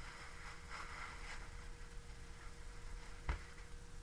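A wad of paper towel rubbing across a whiteboard in soft wiping strokes as a marker drawing is erased, then a single sharp knock a little past three seconds in.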